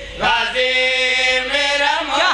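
A group of men chanting a devotional qasida together into a microphone, taking a short breath and then holding one long note.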